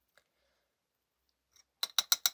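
Near silence, then a quick run of sharp, evenly spaced clicks starts near the end, at about eight a second.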